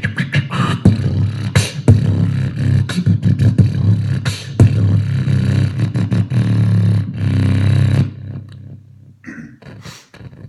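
Vocal beatboxing into a handheld microphone, amplified through a pair of PA speakers: a heavy low bass line under sharp kick and snare hits. The dense beat stops about eight seconds in, leaving only a few faint, scattered sounds near the end.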